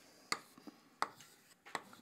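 Chalk writing on a blackboard: a handful of sharp taps and short scrapes as the stick strikes the board, spaced irregularly.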